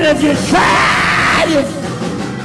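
A man's voice yelling into a microphone in a sermon: a few sliding, chanted syllables, then a raspy shout lasting about a second, then a short sung note. Music plays steadily underneath.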